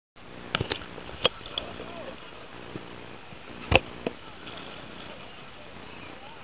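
Water slapping and knocking against a camera held at the sea surface: a handful of sharp slaps, the loudest a little past halfway, over a low steady hum.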